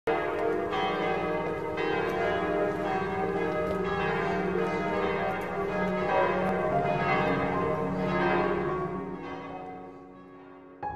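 Church bells ringing, several bells struck one after another in a continuous peal, fading out near the end.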